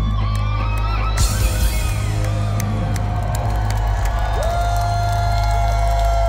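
Live rock band playing, with electric guitars and a steady heavy bass; a long held note comes in about four seconds in.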